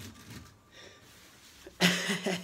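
Quiet room tone, then a sudden loud burst of breath and voice from a man near the end.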